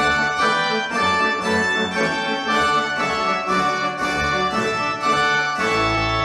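Instrumental music on a keyboard instrument: sustained chords, with a new note or chord sounding about twice a second.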